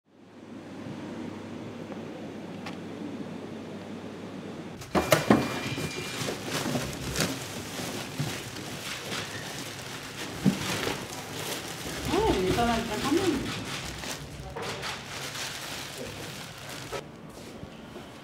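Hospital indoor ambience: a steady low hum, then a sharp knock about five seconds in, followed by irregular knocks and handling sounds with faint voices.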